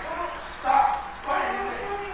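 Strained vocal cries from a man held in a headlock, in two short bursts: the first about half a second in, the second about a second later.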